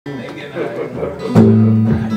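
A guitar chord struck about one and a half seconds in and left ringing, the loudest sound here, with talking before it.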